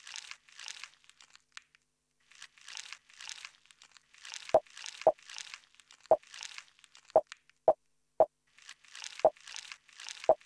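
Sparse, glitchy algorithmic electronic pattern from TidalCycles samples played through SuperCollider: repeated short crackly noise bursts, joined about halfway through by short pitched knocks roughly every half second.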